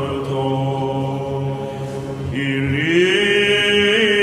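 Byzantine chant sung by male chanters: a low drone (the ison) is held steady under a slow melodic line. About halfway through, the melody climbs and the singing grows louder.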